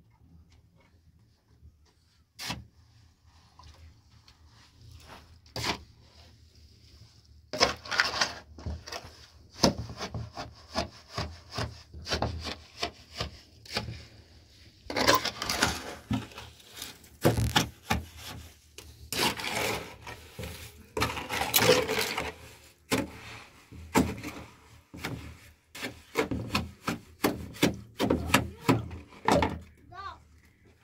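A long-handled tool scraping and stirring a dry mix in a metal basin, in repeated rough strokes about one to two a second. This is mixing material for building. The strokes start after a few quiet seconds that hold a couple of single knocks, pause briefly near the middle, and then run on.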